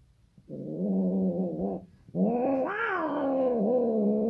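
Persian cat yowling during mating: two long, low, drawn-out calls. The first starts about half a second in and breaks off just before two seconds. The second rises in pitch partway through and falls back.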